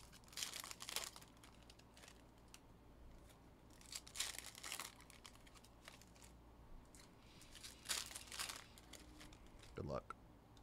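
Foil trading-card pack wrappers being torn open and crinkled by hand, in three bursts of rustling about a second each, roughly four seconds apart. A short rising sound comes just before the end.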